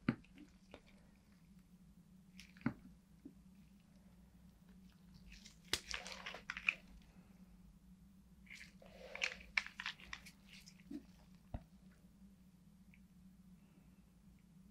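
Quiet handling noises: faint clicks and crinkly crackles of a gloved hand picking up and squeezing small plastic alcohol ink dropper bottles, busiest in two short flurries around the middle, over a faint steady low hum.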